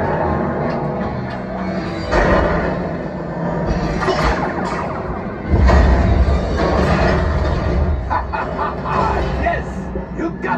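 Theme-park flight-simulator ride soundtrack: a dramatic music score under action sound effects, with a heavy deep rumble coming in just past halfway.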